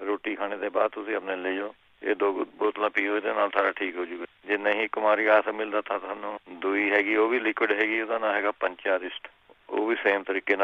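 Speech only: a voice talking steadily in Punjabi, the sound thin and narrow like a radio or telephone line.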